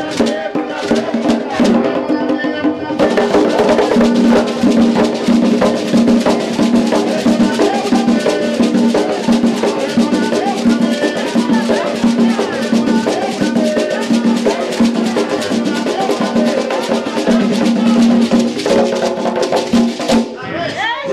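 Ceremonial drum music: fast, dense drumming with other percussion over steady held tones, growing fuller and louder about three seconds in.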